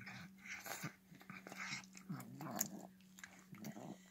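Cat eating wet food from a metal bowl: irregular wet smacking and chewing, with a brief low wavering noise from the cat about halfway through.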